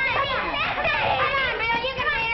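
A group of children's voices calling out over one another, excited, during a game of musical chairs.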